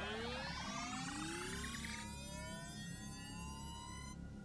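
Synthesized rising sweep sound effect: several tones climbing together slowly in pitch, cutting off suddenly at the end, over a low rumble.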